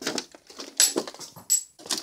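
Footsteps crunching over broken boards and scrap on a littered floor, with two short metallic clinks about a second apart.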